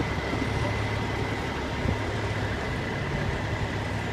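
Heavy truck engine idling: a steady low hum with a thin, steady high tone above it.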